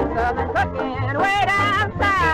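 A woman singing a novelty song with vibrato over a small band, with a steady pulsing bass beat under the voice.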